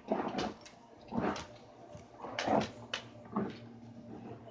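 A series of short rustling scuffs, about five in four seconds, with brief quiet gaps between them.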